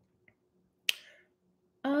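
A single sharp click about a second in, against near silence, followed near the end by a woman starting to speak.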